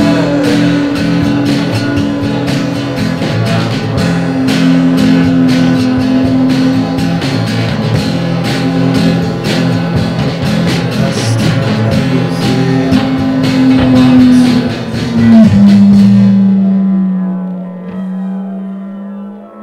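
Rock song played on guitar and drum kit, with a sung word at the very start. Near the end the drums stop and a single low held note is left, fading out.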